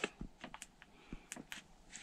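A few faint, short clicks and ticks, irregularly spaced, over quiet room tone.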